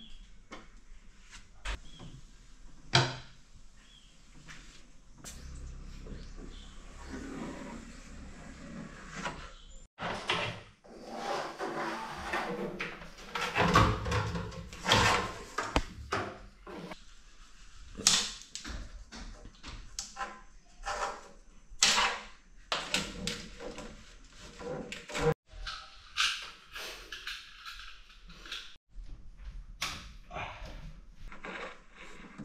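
Irregular knocks, clicks and scraping of hands-on work: handling at a sliding glass window, then a cable being fed through a wooden cabinet, its panels and doors knocking. A few sharp knocks stand out, about three seconds in and again around eighteen and twenty-two seconds.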